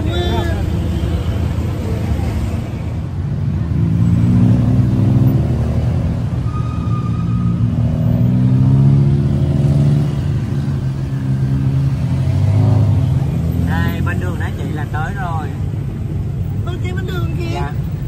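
Tuk-tuk engine running under way, its pitch climbing and dropping several times as it speeds up and slows in traffic.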